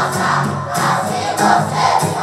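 Loud dance music with a crowd of dancers shouting and singing along, their voices swelling about twice a second.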